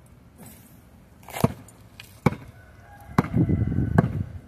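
A basketball bouncing on asphalt: a few sharp, loud thuds roughly a second apart, with a low rumble building under them near the end.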